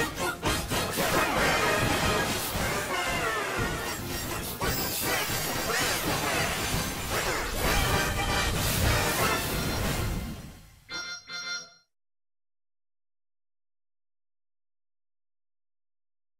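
Animated-series theme song, transposed into G major, playing loud and busy, then fading and ending with two short hits about eleven seconds in, followed by silence.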